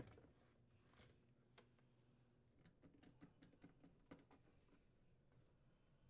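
Near silence with a few faint clicks and ticks, scattered and clustered about three to four seconds in, as a screwdriver turns the screws that hold a dishwasher filter assembly in place.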